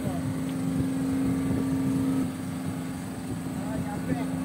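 Steady drone of a fishing boat's motor running, with a low hum that fades about halfway through.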